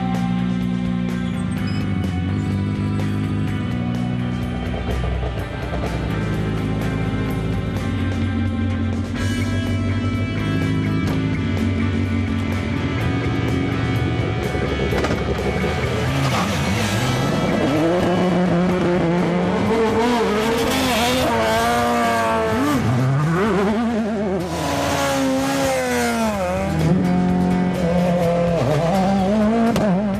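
Background music, joined about halfway through by rally car engines revving hard, the pitch climbing and dropping repeatedly as the cars accelerate and shift gears.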